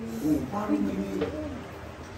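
Low-pitched human voices, with no clear words.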